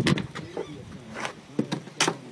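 A landed perch flopping on wooden dock boards: a handful of sharp slaps and knocks at uneven intervals.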